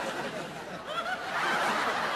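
Laughter from several people at once, swelling and loudest from a little past the middle.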